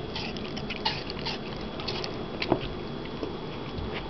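A German Shorthaired Pointer / German Shepherd cross puppy chewing a piece of raw apple, with a run of irregular crisp crunches. The loudest crunch comes about halfway through.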